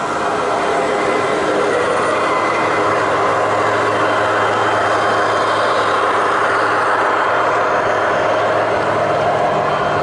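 G scale model trains rolling past on garden-railroad track: a steady rolling rumble of metal wheels on rail. A low steady hum joins in about three seconds in.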